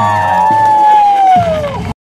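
Several performers shouting together in one long held yell that slides slowly down in pitch, over a low held note from the backing music. It cuts off abruptly near the end.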